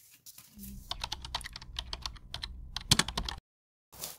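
Things being handled on a desk: paper slid away and small items picked up, making a quick run of light clicks and taps with one louder knock near the end. It cuts off suddenly.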